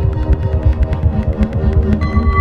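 Experimental electronic music from synthesizers driven by biosonic MIDI, which turns a fetus's movements in the womb into notes. It carries a dense throbbing low pulse, sustained tones and a quick scatter of clicks.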